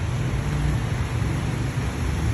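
Honda Freed's engine idling, a steady low rumble.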